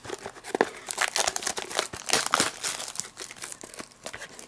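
Plastic trading-card pack wrapper crinkling and tearing as it is handled and pulled open, a run of irregular crackles and rustles.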